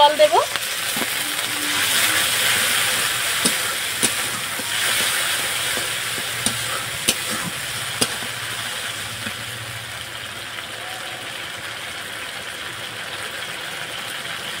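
Liquid poured into hot spiced oil in an aluminium kadai, sizzling and hissing loudest a couple of seconds in, then settling to a quieter sizzle. A metal spatula stirs the pan, with several sharp clicks against the metal.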